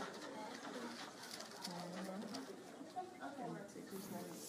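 Faint, indistinct voices in the background, including a low, drawn-out voiced sound near the middle.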